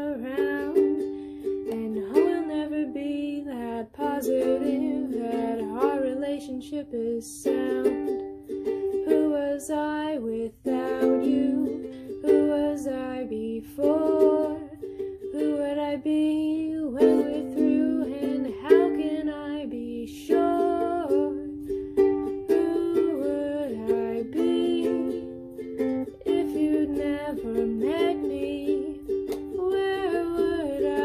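Music: an acoustic song played on a plucked string instrument, picking notes and chords without a break.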